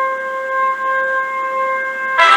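A single steady high-pitched tone with overtones, held at one unchanging pitch without a break.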